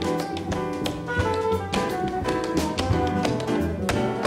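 Tap shoes striking the stage in quick, uneven rhythms over a live jazz band.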